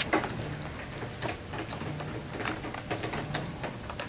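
Classroom ambience of scattered, irregular clicks from students typing on laptop keyboards, with a page of a spiral-bound booklet being turned right at the start.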